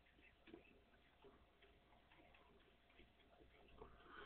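Near silence, with faint scattered ticks of a stylus writing on a drawing tablet.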